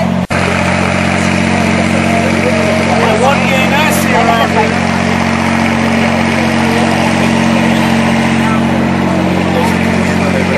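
A steady, even engine drone, the noisy portable floodlight running, under the talk of people nearby. The sound drops out for an instant just after the start.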